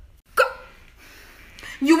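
A single short, sharp vocal sound like a hiccup, about half a second in, then speech begins near the end.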